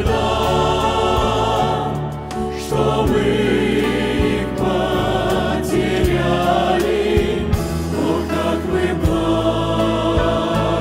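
A church choir singing a hymn in Russian, mixed voices holding long, sustained notes over a steady accompaniment with low bass notes.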